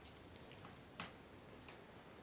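Near silence with a few faint, irregular clicks, the clearest about a second in.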